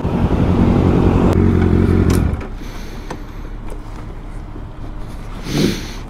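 Engines idling in traffic: a loud, steady low engine drone that stops abruptly a little over two seconds in, leaving quieter engine and traffic sound.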